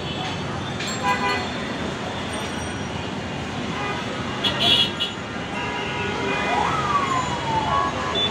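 Busy city traffic of cycle rickshaws and cars: a steady din of engines and tyres with short horn blasts about a second in and again around the middle, and a siren-like wail that rises and then falls near the end.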